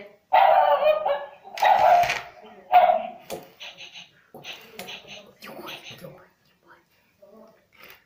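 Interactive plush chihuahua toy barking through its small speaker, three short loud barks in the first three seconds, answering a voice command. Quieter repeated yips or whimpers follow for about three seconds.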